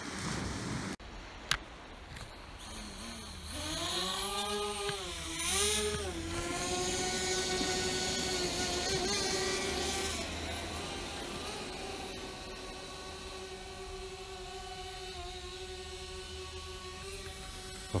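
DJI Spark quadcopter's motors and propellers spinning up about three seconds in with a wavering whine, then settling into a steady high buzzing whine as the drone lifts off and hovers a couple of metres up. A single sharp click comes just before the motors start.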